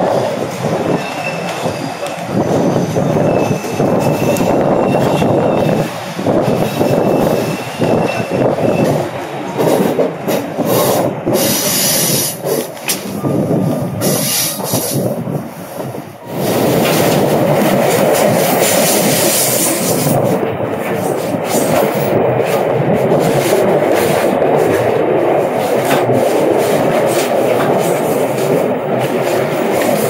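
Passenger train running at speed, heard from an open window of a coach: steady wheel-and-rail noise mixed with rushing wind. A faint high wheel squeal comes and goes in the first several seconds while crossing a steel truss bridge. After a brief dip about halfway through, the noise turns steadier and fuller.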